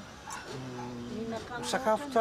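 A man's voice in a pause between phrases: a soft, level hum held for about a second, then speech picks up again near the end.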